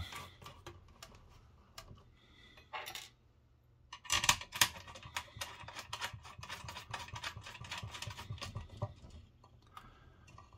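Light metallic clicks and scrapes of bolts, lock washers and a steel bracket being worked by hand against a metal antenna backing plate, as the bolts are turned hand tight. The clicks come irregularly, loudest in a short cluster about four seconds in.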